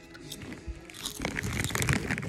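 Lay's potato chips crunching as they are bitten and chewed close to the microphone, the crackling getting busier from about a second in, over background music.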